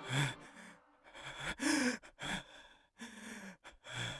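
A person gasping and breathing heavily in short, ragged breaths, some of them voiced, about two a second with brief silences between.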